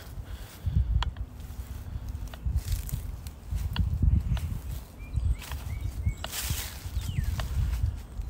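Footsteps on a concrete driveway with an uneven low rumble of handling on a handheld phone's microphone as it is carried along a pickup truck. There are scattered light clicks, and a few short high chirps in the second half.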